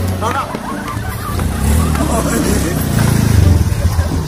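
Small automatic motor scooter engine running as it is ridden, growing louder about three seconds in as it comes up close. Voices talk over it.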